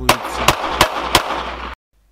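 Smith & Wesson pistol firing about four shots in quick succession, roughly three a second, over steady outdoor background noise; the sound cuts off abruptly near the end.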